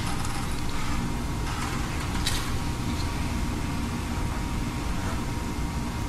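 Steady low room rumble and hiss with a faint hum, no note sounded: the instrument is not struck. A faint brief rustle comes about two seconds in.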